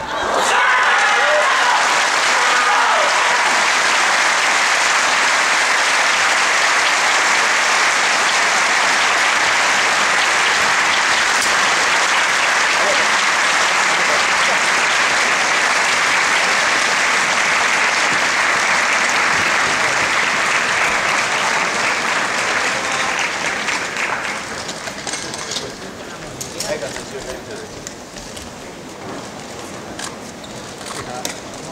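Large arena crowd applauding and cheering, with voices shouting over it in the first few seconds. The applause is loud and steady for about 24 seconds, then dies down.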